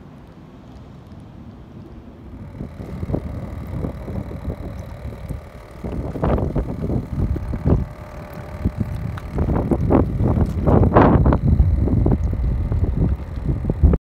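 Wind buffeting the phone's microphone, with irregular bursts of splashing and knocking as a Dungeness crab is handled in a bucket of water. The rumble builds a few seconds in, and the loudest bursts come about six seconds in and again around ten to twelve seconds.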